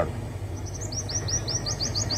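A small bird chirping: a quick run of short, high notes, about eight a second, starting about half a second in.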